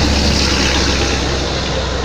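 Road traffic passing: a steady low rumble with an even higher hiss over it.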